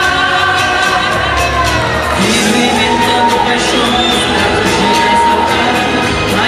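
A woman singing into a handheld microphone over amplified backing music, holding long notes.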